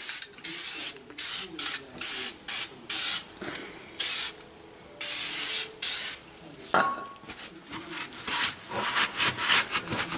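Aerosol can of Fluid Film rust and corrosion protector spraying onto the underbody metal in short hissing bursts, about two a second, then two longer sprays in the middle; near the end, quieter rubbing of a rag over the coated parts.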